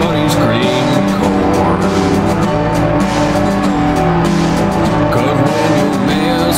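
Experimental post-industrial country music: layered steady drones over a busy rhythmic texture, with swooping glides in pitch that recur every second or two.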